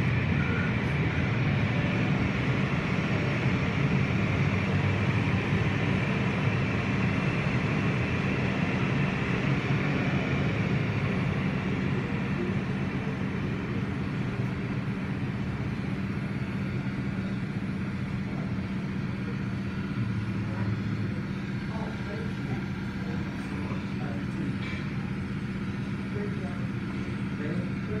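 Automatic tunnel car wash heard from inside the car: a steady wash of water spray and cloth brushes working over the car, over a constant low machine hum, easing slightly in the second half.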